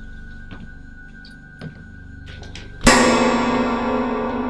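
Horror-film score: a low steady drone, then a sudden loud musical hit about three seconds in whose many tones ring on and slowly fade.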